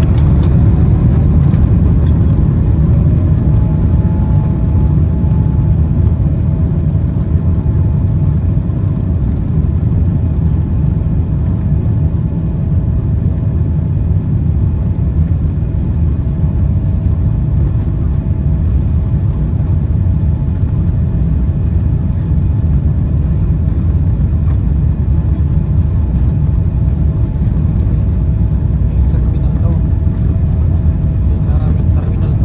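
Boeing 777-300ER heard from inside the cabin: its GE90 jet engines run at high thrust with a steady whine over a loud, continuous low rumble as the airliner rolls down the runway for takeoff.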